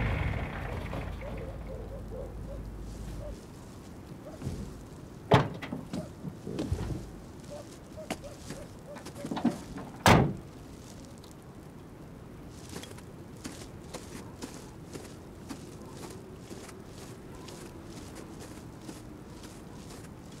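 A van's engine hums low and cuts off about three seconds in; the cab door slams shut twice with sharp thunks, about five and ten seconds in. After that, footsteps crunch steadily in snow, about two a second.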